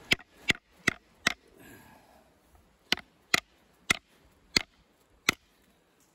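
Small fixed-blade knife (ESEE CR 2.5) chopping into a live branch resting on a wooden stump: nine sharp strikes, four quick ones in the first second and a half, then five more after a short pause.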